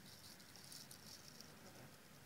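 Near silence: faint room tone with a light steady hiss between narrated passages.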